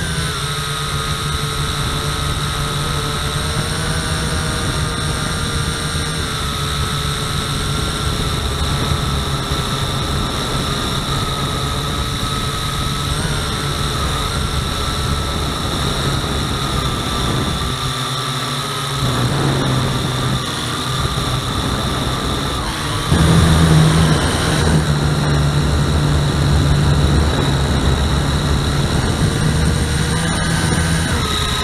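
Quadcopter motors and propellers whining steadily, heard up close through the camera mounted on the drone. The whine bends slightly up and down in pitch as the throttle changes, and grows louder at about 23 seconds in.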